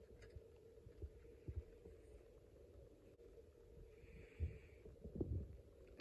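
Near silence: faint room tone with a low steady hum and a few soft, dull bumps of hands handling the snap-circuit board.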